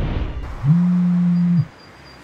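A mobile phone vibrating for an incoming call: one low, steady buzz lasting about a second, starting and stopping abruptly.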